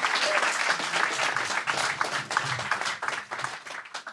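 Audience applauding, the clapping thinning out and dying away near the end.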